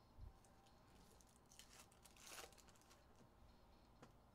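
Faint handling of trading card packs: a soft low thump right at the start, then a short run of crackling and tearing from a pack wrapper, peaking about two and a half seconds in.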